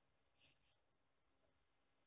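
Near silence: faint room tone, broken by one brief faint hiss about half a second in.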